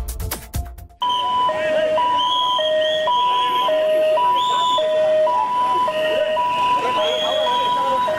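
Ambulance two-tone siren alternating between a high and a low note, each held about half a second, starting about a second in after a short burst of beat-driven intro music, with crowd voices underneath.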